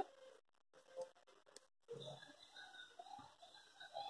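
Near silence: room tone with faint handling sounds, a soft click about a second in and light rustles later, as needle and thread are worked through grosgrain ribbon.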